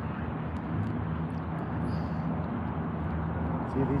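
Small propeller airplane flying overhead, its engine heard as a faint, steady drone.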